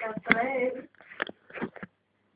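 A person's voice for about the first second, then a few short clicks.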